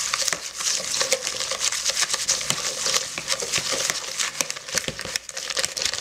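A whisk beating a thin chickpea-flour batter in a plastic mixing bowl: a fast, steady run of short clicking strokes against the bowl.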